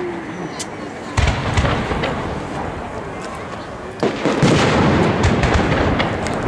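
Aerial firework shells bursting: a sudden loud bang a little over a second in, followed by a run of sharp cracks, then a second, louder volley about four seconds in with dense crackling bangs.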